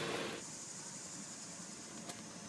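Faint steady hiss of outdoor background noise, with no distinct event.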